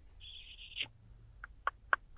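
A man's short hissing breath drawn through the teeth, then a few faint mouth clicks.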